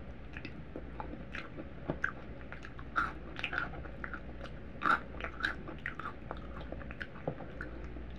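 A person chewing food close to the microphone, with wet mouth sounds and scattered crisp crunches; the sharpest crunches come about three and five seconds in.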